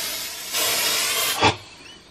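Aerosol can of artificial snow spray hissing in one continuous burst that cuts off sharply after about a second and a half.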